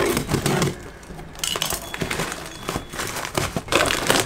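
A cardboard shipping box being cut open and unpacked: irregular scraping and scratching as a cutter runs along the packing tape, then the cardboard flaps and packaging rustling and crinkling as the box is opened. The loudest handling comes in the first second.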